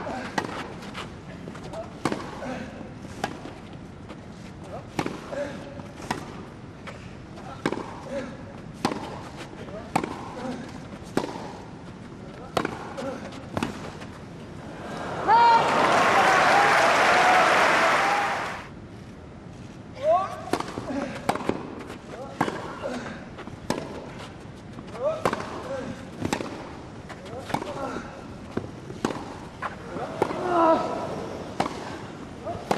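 Tennis rally on a grass court: racket strikes on the ball, about one a second, with the ball bouncing in between. About halfway through, a crowd bursts into applause and cheering for about three seconds, and then another rally of racket strikes begins.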